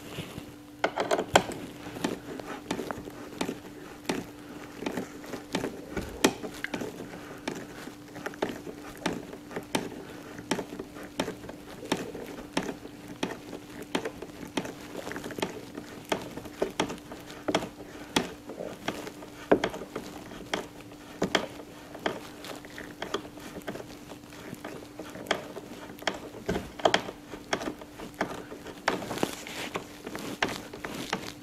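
Scattered light metallic clicks and taps as a small socket is turned by hand on the mounting screws and bolts of a carbon-fibre side skirt, over a steady low hum.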